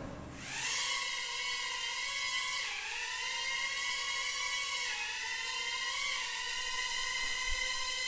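Kai Deng K130 mini egg quadcopter hovering: its tiny motors and propellers make a steady high whine. The whine starts about half a second in, and its pitch dips twice as the motor speed changes.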